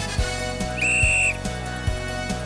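A referee's whistle blown once, a short steady blast of about half a second just before the middle, over background music with a steady beat.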